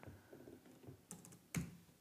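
Faint computer keyboard keystrokes: a few light, scattered key clicks with one louder click about one and a half seconds in.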